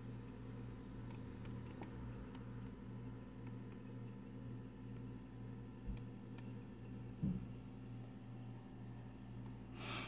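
Quiet steady low hum in a small room, with a faint soft thud about six seconds in and a brief low sound just after seven seconds.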